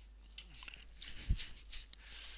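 Light clicks and handling rustles of metal tweezers and a small metal part being set down in a clear plastic tray on a workbench, with a dull low thump just past halfway.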